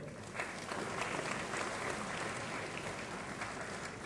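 Audience applauding: an even spread of clapping that begins just after the start and slowly fades towards the end.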